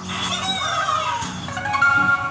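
Angry Birds game sound effect: a cartoon bird's cry that swoops up and then down in pitch over about a second. It is followed near the end by held musical tones.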